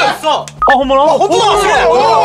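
Men's excited voices exclaiming, with a short two-note electronic beep about a third of the way in, over low background music.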